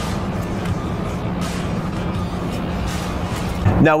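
Steady low hum and rushing noise, typical of the blowers that keep an air-supported tennis dome inflated, with a couple of faint sharp taps.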